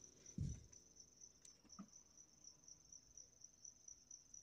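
Near silence, with a cricket trilling faintly and steadily in the background. A soft low thump comes about half a second in, followed by a couple of faint clicks from small plastic parts being handled.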